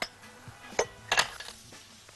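Faint background music with two short sharp clicks of kitchenware, a metal tray and a glass bowl, being handled on the counter, a little under a second in and just after a second.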